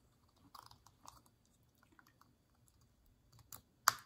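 Faint ticks and rustles of fingers working a steel piston ring over plastic guide strips on an oily motorcycle piston, then two sharper clicks near the end, the last and loudest as the ring drops into its groove.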